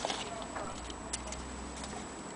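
Antique Elliott bracket clock's 8-day movement ticking, with sharp, evenly spaced ticks a little more than half a second apart.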